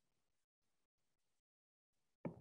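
Near silence: a very faint background hiss that drops out completely to digital silence several times.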